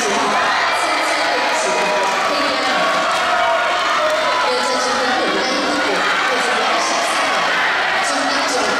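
Crowd of spectators cheering and shouting, many young voices overlapping in a steady din.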